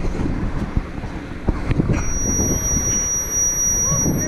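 Wind buffeting the microphone on the grain bin roof, with a few knocks of footsteps on the metal roof steps. A steady high-pitched whistle sets in about halfway through.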